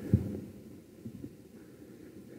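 Quiet room hum during a pause in speech, with a couple of soft low thumps near the start.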